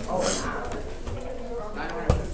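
A person's low, wordless voice sounds, with a short hiss a fraction of a second in.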